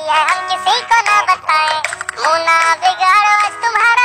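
A high, pitch-shifted synthetic-sounding voice singing a Hindi birthday song over a light musical backing.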